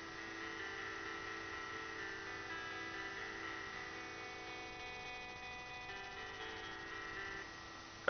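Synthesized guitar from the Pocket Guitar app on an iPod Touch, played through a speaker dock: a chord ringing on with held notes that shift slightly a couple of times.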